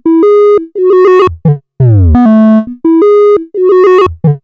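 Modular synthesizer playing a short melody of pitched notes with rich overtones. Some notes are short and detached, others are held, and several slide down in pitch. It is the expressive version of a melody, shaped with articulation, ornaments and changes in dynamics.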